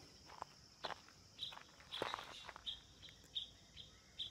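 Faint outdoor ambience of a person walking: soft footsteps, over a steady high insect drone. From about a second and a half in, a bird chirps repeatedly, about twice a second.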